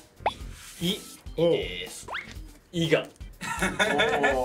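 Voices with light background music, and two quick rising pops of an added sound effect, one just after the start and one about two seconds in.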